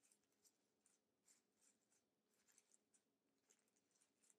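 Near silence, with faint, irregular crinkles of thin coffee-filter paper as the cut petals of a paper flower are pulled open and fluffed by hand.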